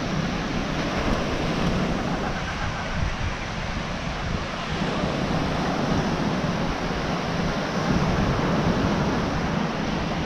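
Ocean surf washing onto a sandy beach, mixed with wind buffeting the microphone: a steady rushing noise with a low rumble underneath.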